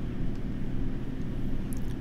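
Steady low hum of background noise, with no speech.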